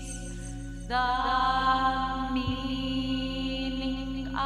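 Pre-recorded electronic orchestra holding sustained drone-like chords over a steady low hum. A louder new chord swells in about a second in.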